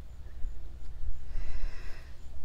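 Low, uneven rumble of wind and handling noise on a handheld phone microphone outdoors while the person walks, with a few faint high chirps.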